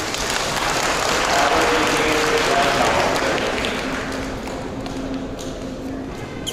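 Audience applauding, building up over the first second or two and dying away after about four seconds.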